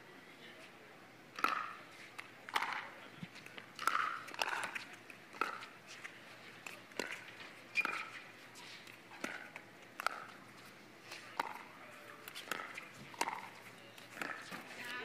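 Pickleball paddles striking a plastic ball in a rally: about a dozen sharp pops, roughly one a second.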